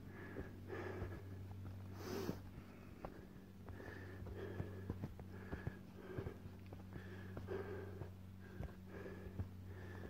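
A hiker breathing hard and rhythmically while walking, with soft puffs about once or twice a second and faint footfalls. A faint steady low hum runs underneath.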